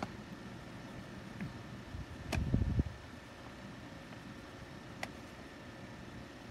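Faint steady hiss of room noise, with a soft low thump about two and a half seconds in and a couple of light clicks.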